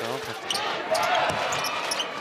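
Basketball arena game sound: a basketball bouncing on the hardwood court in a series of sharp bounces, over the voices of the crowd in the hall.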